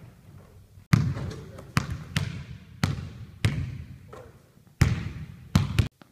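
A basketball bouncing on a hardwood gym floor: about nine sharp, irregularly spaced bangs, each trailing off in a long echo in the large hall.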